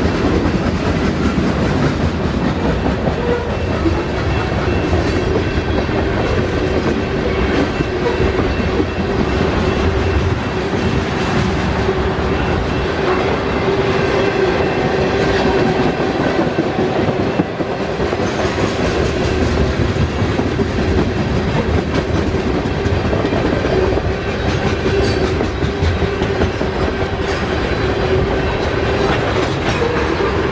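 Freight cars rolling past at speed: a steady rumble of steel wheels on rail with clickety-clack over the rail joints, and a steady hum held throughout.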